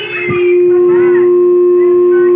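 Microphone feedback through the PA system: a loud, steady howl at one pitch starts about half a second in and holds without wavering.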